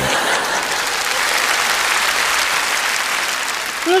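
Large audience applauding, a steady, dense clapping.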